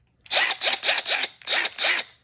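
Milwaukee M12 Fuel brushless right-angle impact wrench run unloaded on its highest speed setting, its motor whirring in a rapid series of short trigger bursts.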